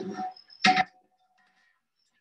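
A metal pail or basin set down with one short clank, followed by a brief fading ring.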